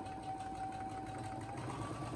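Computerized sewing machine running and stitching a seam at a steady pace. Its motor whine holds one pitch, then shifts higher near the end.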